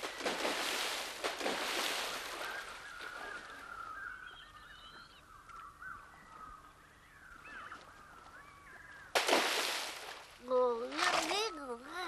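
Cartoon water splashing for the first few seconds, then faint warbling tones, a second splash about nine seconds in, and grunting, voice-like sounds near the end.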